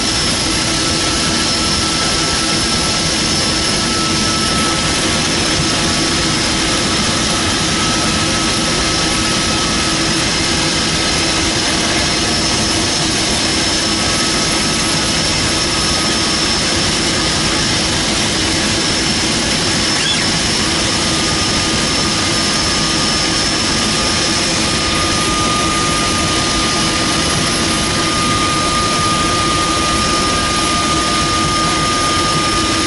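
DHC-3 Otter floatplane's engine and propeller heard from inside the cockpit, running steadily at taxi power, with a steady high whine over the engine noise.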